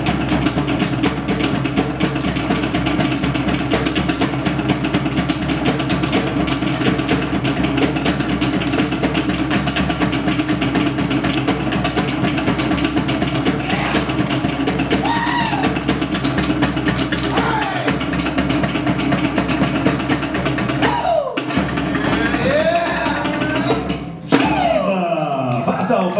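Polynesian drumming music: a fast, steady drum rhythm, shifting abruptly about 24 seconds in.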